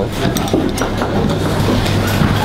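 Metal spoon stirring and scraping thick white miso sauce in a stainless steel bowl, with a few light clinks of spoon on metal. A steady low hum runs beneath.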